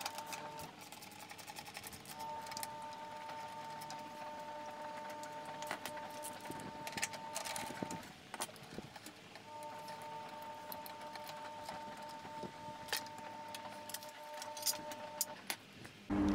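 Faint metallic clicks and knocks of a socket wrench working two small bolts out of a steel cover plate on a motorcycle. Behind it a steady high hum, a washing machine running in the background, drops out twice for a second or so.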